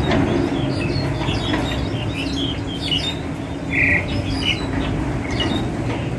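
Wild songbird calls: a run of quick, short chirping notes, with one louder, harsher note about four seconds in, over a steady low hum.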